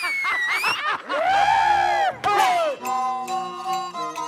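Performers' high, drawn-out shouted calls in the style of Laoqiang opera, their pitch swooping up and down. A little under three seconds in, the accompaniment starts: a bowed fiddle and a plucked lute hold steady notes over sharp clicks keeping time.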